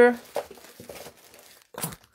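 Clear plastic bags of photos and postcards rustling and crinkling faintly, with a short, louder burst of noise near the end.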